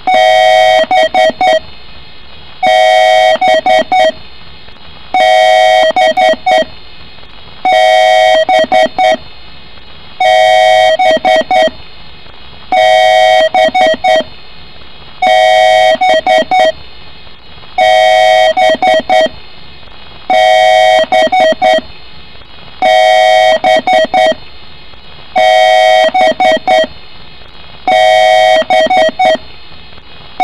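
Loud repeating electronic beep pattern: a steady tone lasting about a second followed by four short beeps, the cycle repeating roughly every two and a half seconds.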